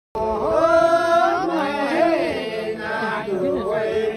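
A group of men singing a Magar folk song together, several voices overlapping on long held notes.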